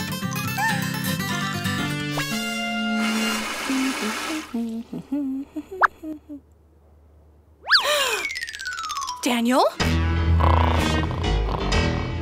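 Children's cartoon background music, which breaks off after about four seconds into a few short sound effects and a brief lull. About eight seconds in, cartoon sound effects sweep in pitch, one falling and one dipping and rising again, and then the music resumes.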